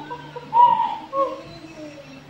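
Two short hoot-like vocal calls from a person, about half a second and a second in. The first is louder and falls slightly in pitch. A steady low hum runs underneath.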